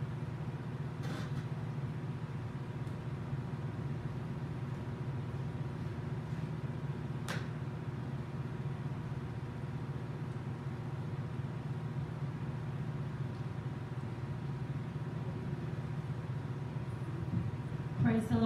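Room tone: a steady low hum with a few faint steady tones above it, broken by a faint click about a second in and another about seven seconds in.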